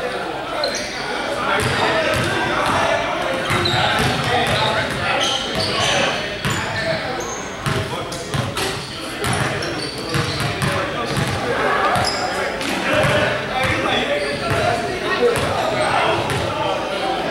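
Basketball game in an echoing gym: a ball bouncing on the hardwood floor, sneakers squeaking in short high chirps, and players and onlookers talking indistinctly.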